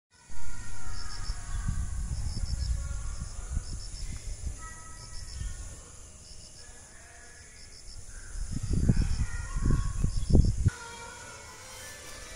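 Wind buffeting the phone microphone in irregular low rumbling gusts, heaviest shortly before the end, where it cuts off abruptly. Faint high chirps, a few quick pips each, repeat about once a second.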